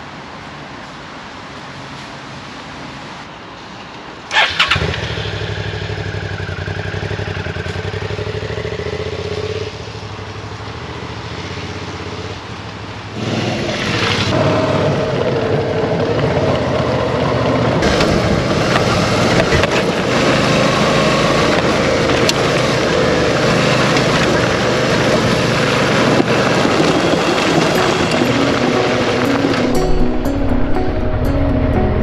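Suzuki V-Strom 650 XT's V-twin engine starting with a sudden burst about four seconds in and idling. About thirteen seconds in it steps up louder and keeps running as the bike is ridden.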